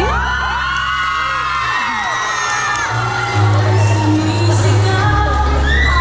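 Music with a steady bass line playing for a dance performance, while a crowd of children shouts and cheers over it in many short rising-and-falling cries.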